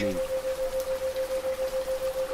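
Steady rain with a continuous tone of about 528 Hz over it. The whole sound pulses evenly about seven times a second: a 7 Hz isochronic tone meant to induce theta-state relaxation.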